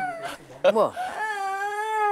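A toddler whining: one long, drawn-out fussy whine, high-pitched and held steady, starting about halfway through.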